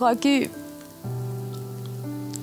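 A woman's voice in a brief tearful utterance at the start, then a held low chord of soft background music comes in about a second in.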